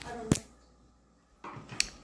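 Handling noise as a phone is moved: a sharp click about a third of a second in and another near the end, with soft rustling around them and a near-silent gap between.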